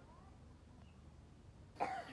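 A person coughing once, sudden and loud near the end, over faint outdoor background.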